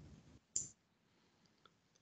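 Near silence in a video-call recording, broken by one short click about half a second in and a much fainter tick near the end.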